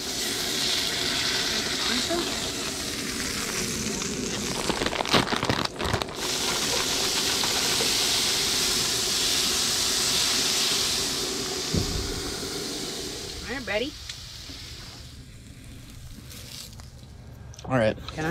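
Vegetables sizzling in an oiled frying pan on a camp stove, stirred with tongs, with a few sharp utensil clicks about five seconds in. The sizzle fades out about two thirds of the way through, leaving a quieter stretch with a brief bit of voice.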